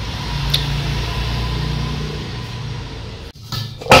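A steady low mechanical hum over background hiss, with one short click about half a second in; the hum cuts off abruptly near the end.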